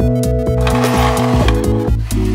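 Background electronic music with a steady beat and held synth chords, with a hissing sweep about halfway through.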